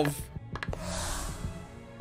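A few light clicks, then a soft rushing hiss lasting about a second, from the anime episode's soundtrack.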